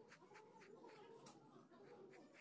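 Very faint pencil scratching on paper in quick repeated strokes as a curved outline is sketched, over a faint wavering background sound.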